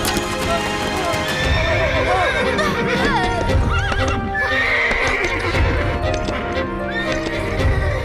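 Cartoon horse sound effects: hooves clip-clopping at a trot and a whinny about two to four seconds in, over background music.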